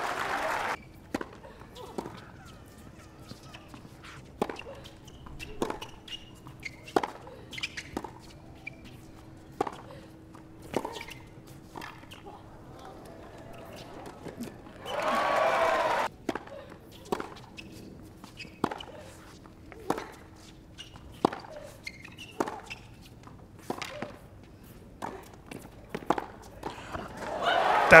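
Tennis ball rallies on a hard court: sharp pops of racquets striking the ball and the ball bouncing, about one a second. A brief voice is heard about halfway through.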